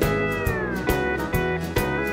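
Honky-tonk country band playing an instrumental passage: a steel guitar slides down in pitch over about the first second, over a bass line and a steady drum beat.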